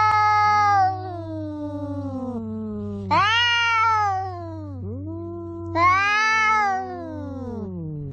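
Two cats yowling at each other in a fight standoff: long, wavering howls, loudest at the start, about three seconds in and about six seconds in, with lower, slowly falling moans between them, the two voices sometimes overlapping.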